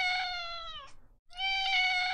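A domestic cat meowing twice: two long, drawn-out meows, each steady in pitch and dipping slightly as it ends, about half a second apart.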